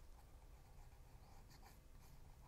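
Near silence, with faint scratching from the nozzle tip of a squeeze bottle of liquid glue drawn along a cardstock tab.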